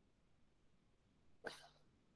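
Near silence: room tone, broken by one short, breathy vocal sound from a person about one and a half seconds in.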